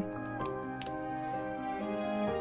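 Background music: a melody of held notes, each changing to the next about every half second, with a faint click or two in the first second.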